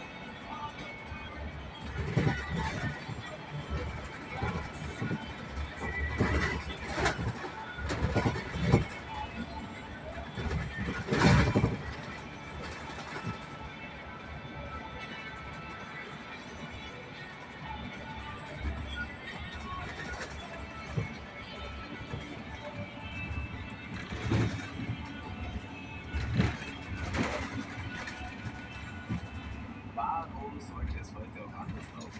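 Radio music playing inside a moving bus over the steady engine and road noise, with several loud knocks through the cabin.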